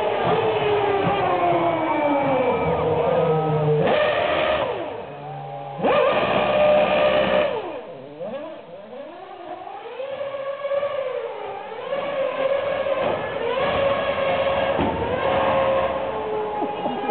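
McLaren Formula One car's engine revving hard as the car power-slides through a U-turn. The pitch falls, then surges loudly about four and six seconds in, dips and sweeps up and down as the car turns, and settles to a steadier note near the end.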